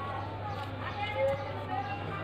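Faint, indistinct voices in the background over a steady low hum, with a few light clicks as a small plastic pocket hotspot is handled and its back cover pressed on.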